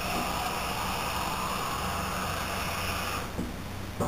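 A steady whirring noise with a high whine, running for about three seconds and then cutting off: an incidental household noise in a working kitchen, not part of the cooking.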